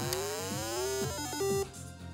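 Simon electronic memory game switched on, its speaker playing a start-up jingle. An electronic tone glides upward for about a second, then a few short stepped beeps follow and stop.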